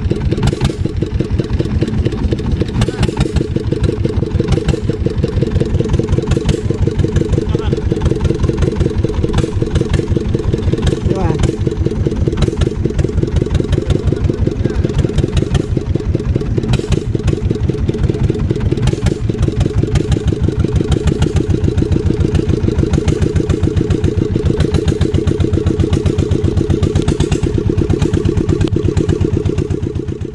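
Small boat engine running steadily at cruising speed, a fast, even putter that does not change.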